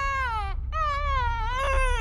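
A person fake-crying like a baby: long, high-pitched wailing sobs that slide down in pitch, one after another, over a low rumble.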